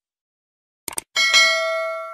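Two quick clicks just before a second in, then a notification-bell ding struck twice in quick succession, its bright ringing tone fading slowly.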